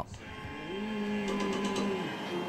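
Soft instrumental music with slow, sustained held notes, fading in.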